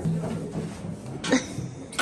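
A single short cough about a second and a quarter in, over a low background of room noise.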